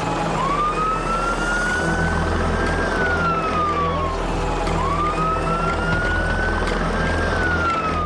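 Emergency-vehicle siren wailing: a slow rise and fall, heard twice, over a steady low rumble.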